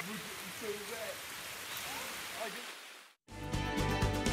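Steady rain with voices exclaiming and laughing over it. The sound fades out about three seconds in, and a news theme tune starts with a hit just after.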